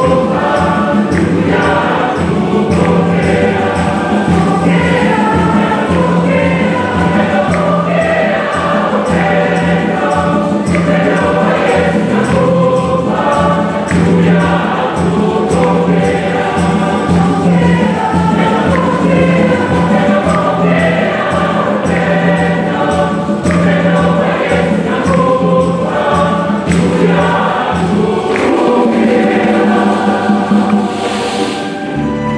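A choir and congregation singing a hymn together, over a sustained low accompaniment and a steady beat.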